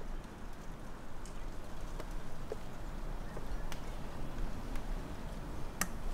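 A few faint, scattered clicks and taps of hands working a portable jump starter and its cable, over a low steady background rumble.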